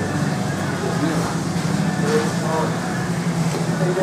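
Steady low mechanical hum of room equipment with faint murmured voices over it.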